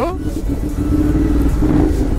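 Ducati Monster's V-twin engine running steadily under way at a constant pitch, with a deep low rumble: the exhaust racket the rider is pointing out.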